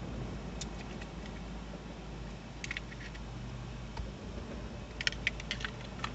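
A few sharp clicks and taps from a small candle lantern being handled: one about half a second in, another near the middle, and a quick run of them near the end, over a steady low hum inside a vehicle cabin.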